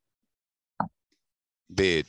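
Mostly dead silence between spoken phrases. A brief voiced blip comes a little under a second in, and speech starts again near the end.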